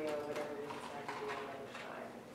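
A quiet voice with a series of light, irregular taps.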